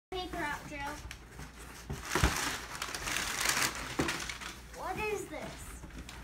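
Packing paper crinkling and cardboard rustling as a large shipping box is handled and opened, loudest in the middle, with a thump about two seconds in and a knock near four seconds.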